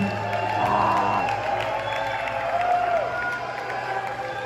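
A live punk rock song ending: the full band cuts off right at the start, leaving guitar amplifiers ringing and humming while the crowd cheers and applauds.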